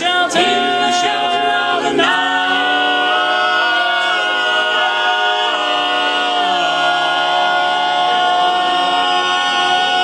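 Male barbershop quartet singing a cappella in close harmony. A few moving notes early on give way, about two seconds in, to a long sustained chord. The bottom note steps down partway through, and the chord is held to the end.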